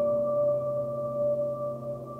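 Ambient wash of a few held, ringing tones from an electric piano played through the Hologram Microcosm effect pedal, slowly fading out.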